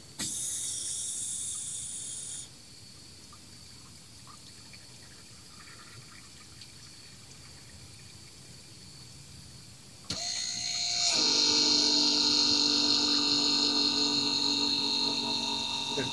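A brief high-pitched whine in the first two seconds, then about ten seconds in the third-generation Prius's ABS brake actuator pump motor clicks on and runs with a steady whine. This is the pump working through the scan-tool-driven bleed step, drawing fluid down from the reservoir and refilling it.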